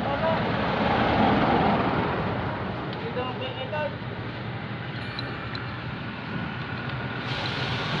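Steady motor-vehicle engine noise that swells about a second in and then eases off.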